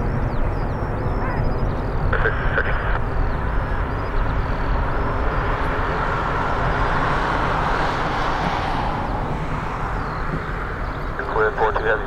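Jet noise from a departing Boeing KC-135 tanker's four engines as it climbs away after takeoff: a steady deep rumble with a hiss that swells about two-thirds of the way through, then eases.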